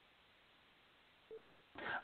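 Near silence with faint hiss in a pause between a man's sentences, broken by one brief faint tone a little past halfway; his voice starts again near the end.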